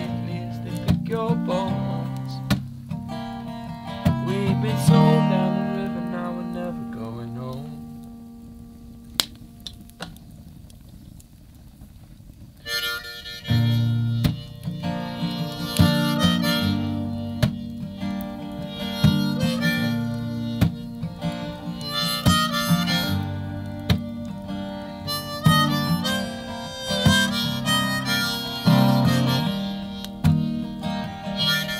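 Instrumental break of an acoustic song: steel-string acoustic guitar strumming with harmonica playing held, bending notes over it. The music dies down to a soft passage about seven seconds in, then comes back in full about thirteen seconds in.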